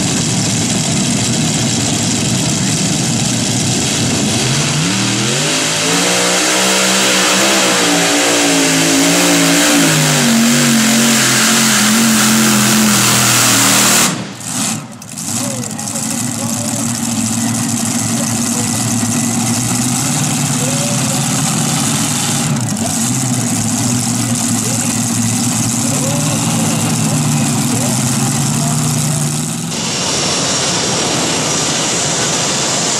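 Multi-engine modified pulling tractor, its supercharged V8s run hard as it pulls down the track. The sound is loud and continuous, climbs in pitch about five seconds in, and drops briefly about halfway through.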